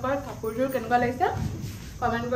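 A woman speaking, in continuous talk with no other sound standing out.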